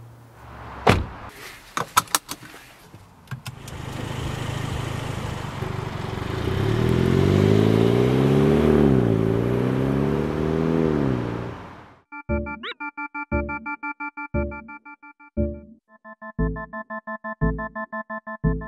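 Two convertible sports cars, a Mazda MX-5 and a Mini John Cooper Works, pulling away after a few thunks, their engine note climbing, dipping once and climbing again as they accelerate. About twelve seconds in the engine sound cuts off and electronic keyboard music with a steady beat takes over.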